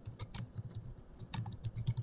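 Typing on a computer keyboard: a quick, quiet run of key clicks as a word is entered.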